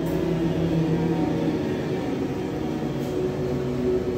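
Several voices humming together in long, held tones at different pitches, as a vocal warm-up exercise.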